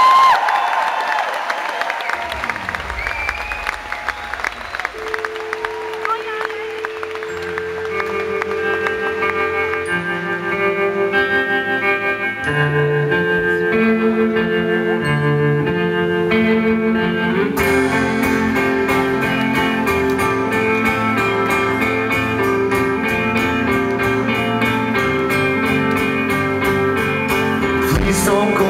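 Live crowd cheering and applauding for an introduced band member, then a rock band starts a song's intro: held electric guitar notes from about five seconds in, bass joining partway through, and drums and the full band coming in about two-thirds of the way through.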